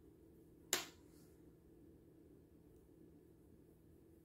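Very quiet room tone with a faint steady low hum, broken by one sharp click about three-quarters of a second in.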